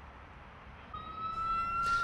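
A wailing, siren-like tone that comes in about a second in, rises slowly in pitch, and begins to fall near the end, over low background noise.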